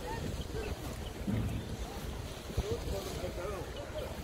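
Wind rumbling on the microphone, with faint distant voices of people out of shot.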